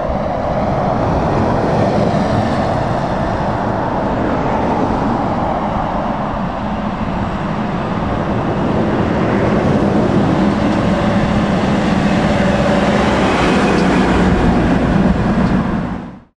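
Heavy vehicles passing close by on a road: a Scania R480 tractor unit, then a Case IH Quadtrac 620 tracked tractor. The tractor's diesel engine runs as a steady low hum that grows louder through the second half.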